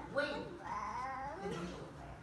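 A child's high-pitched voice talking in short phrases, its pitch gliding up and down.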